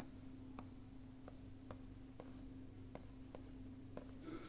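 Faint taps and scratches of a stylus drawing on a pen tablet, about two light ticks a second, over a low steady hum.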